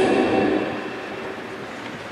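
The athlete introduction over the stadium loudspeakers trails off, and its echo dies away over about a second and a half into the steady noise of an open stadium.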